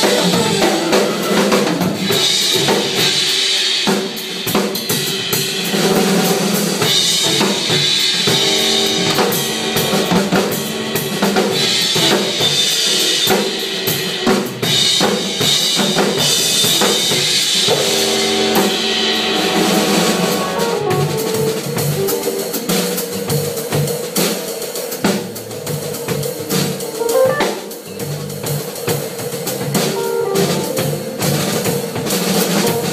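Odery drum kit played live in a continuous groove, with bass drum, snare and cymbals struck in quick succession.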